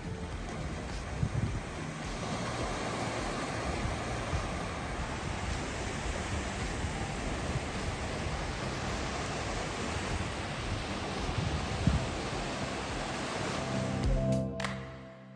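Sea waves washing onto a beach, with wind buffeting the microphone as a low rumble. Two brief louder gusts come, one about a second in and one near the end.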